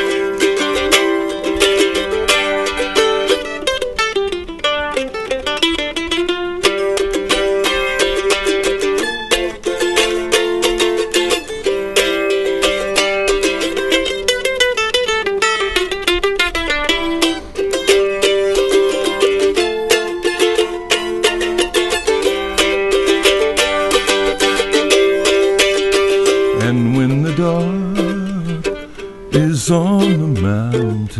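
An F-style mandolin plays a solo instrumental break: a picked melody whose long held notes are kept going by rapid repeated picking, or tremolo.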